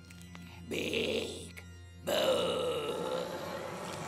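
Eerie background music with a steady low drone, overlaid by cartoon monster growls: a short rasping growl about a second in, then a louder growl from about two seconds in whose pitch falls.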